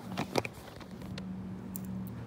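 Steady low hum of the supermarket, with two short, sharp handling noises a fraction of a second in.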